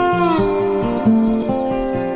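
Instrumental intro music of plucked guitar notes in an even rhythm, with one note sliding down in pitch at the start.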